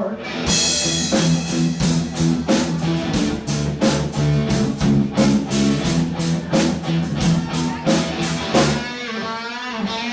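Live amateur rock band playing: electric guitar over a drum kit keeping a steady beat of about four hits a second. Near the end the drums drop out briefly and a held note wavers in pitch.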